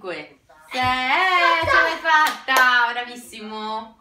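A person's voice in long held notes that slide up and then settle lower, with two sharp clicks a little past halfway.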